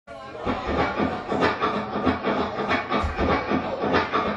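Gretsch 6120 hollow-body electric guitar strummed in a steady chugging rhythm, about four strums a second.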